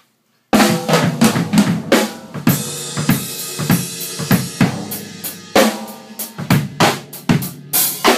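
Acoustic drum kit being played, starting suddenly about half a second in: quick strikes on the drums, with a cymbal wash ringing through the middle.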